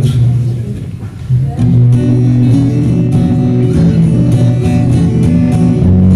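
Live band music: a guitar chord rings out and fades, then about a second and a half in the band comes in with strummed acoustic guitar and bass guitar in a steady rhythm.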